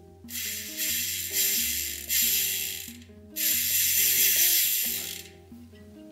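Zipp rear hub's pawl freehub clicking in a fast buzz as it is spun twice, each spin lasting about two seconds and dying away. The pawls are freshly oiled with a thin chain oil, which makes it slightly quieter.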